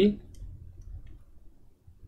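Faint clicks and taps of a stylus on a drawing tablet as a label is handwritten, over a low steady hum; the tail of a spoken word is heard right at the start.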